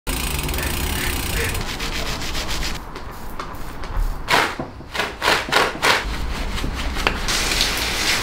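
Mountain bike cleaning sounds: a hissing, crackling haze from foamed degreaser on the chain at first, then several short squirts from a trigger spray bottle onto the fork and frame. Near the end comes a steady hiss of rinse-water spray.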